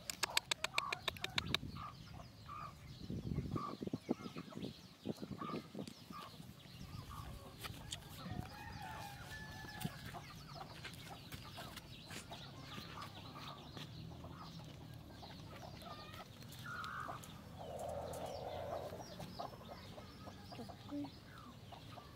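Chickens clucking on and off, with a quick run of clicks near the start.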